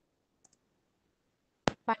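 Near silence broken by two faint ticks about half a second in and one sharp click near the end, just before a voice starts.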